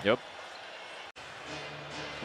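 Faint arena background noise under a basketball broadcast, a steady wash without speech, broken by an abrupt edit cut to silence about a second in; the wash resumes with a faint low hum.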